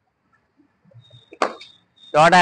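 Cricket bat striking a ball once, a single sharp crack about one and a half seconds in, as the batter plays a lofted shot off a throwdown.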